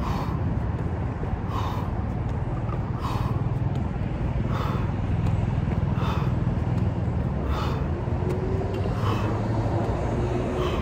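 A man breathing hard and sharply with each jump squat, one burst of breath about every second and a half, over a steady low rumble.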